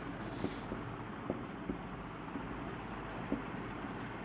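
Marker pen writing on a whiteboard: a run of short, faint strokes with a few light taps, over a steady background hiss.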